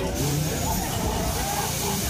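Fairground noise around a running Tagada ride: a steady low rumble and hiss with voices over it.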